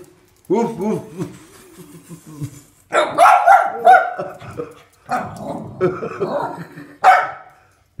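A person's mock 'woof' sounds about half a second in, then a small dog barking in quick high-pitched runs from about three seconds in, barking at a plush toy dog it dislikes.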